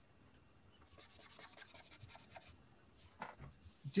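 Drawing on paper: a quick run of rapid, even scratching strokes of a drawing tool on paper, like hatching or shading, starting about a second in and stopping after under two seconds, followed by a few faint taps.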